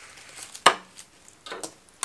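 Handling noise as a rose stem is set into a flower arrangement in a metal crown-shaped pot: one sharp click about two-thirds of a second in, and a softer one later.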